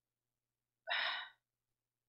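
A man's single short breath, about a second in and lasting about half a second, between halting phrases of speech.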